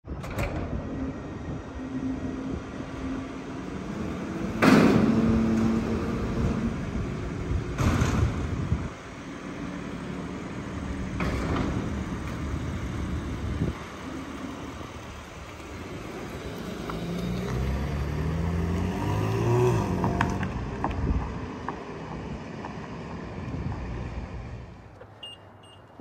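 Heavy metal doors of a vehicle lift opening with three loud clunks, then a BMW M3's S58 3.0-litre twin-turbo inline-six pulling out at low speed, its note rising in steps.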